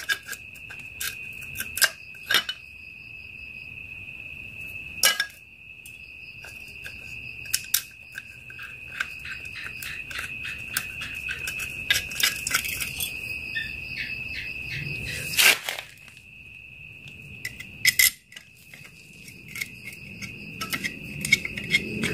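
Metal clicks and clinks of a bolt and tools being handled at an open motorcycle clutch, with a few sharper knocks, the loudest about two-thirds of the way through, over a steady high-pitched trill.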